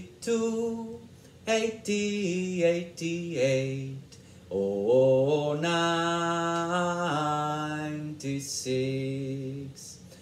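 A man singing a counting song in eights, unaccompanied, on slow held notes. About halfway through, his voice rises and holds one long note for more than two seconds.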